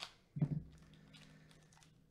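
Foil trading-card pack torn open and handled in gloved hands: a sharp rip at the very start, then faint crinkling of the foil. The loudest sound is a short low vocal sound about half a second in, trailing into a quiet held hum for about a second.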